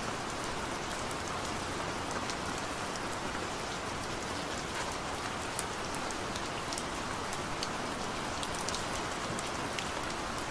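Steady rain: an even hiss dotted with scattered sharp drop ticks.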